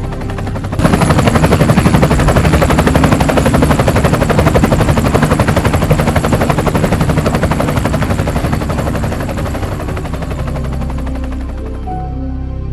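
A loud, rapid rattling pulse comes in suddenly about a second in over a music soundtrack, then slowly fades toward the end.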